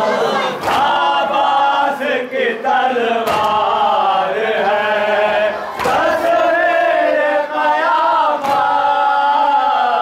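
A group of men chanting a noha in unison. Sharp slaps of open hands striking chests (matam) land every couple of seconds.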